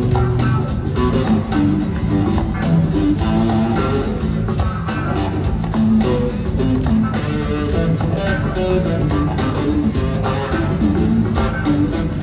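Live rock band playing an instrumental jam: a lead electric guitar on a hollow-body guitar over bass and a steady drum beat, recorded from the audience.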